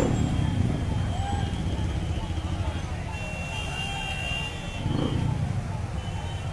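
Many motorcycles riding past in a dense procession, their engines a steady low rumble, with crowd voices mixed in. A high steady tone sounds for about two seconds in the middle.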